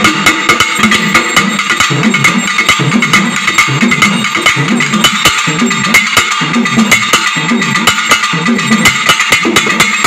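Two pambai, the Tamil pair-drums, played together in a fast, steady rhythm of dense, evenly repeating strokes.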